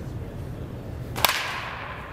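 Baseball bat striking a pitched ball once, about a second in: a single sharp crack with a short ringing tail.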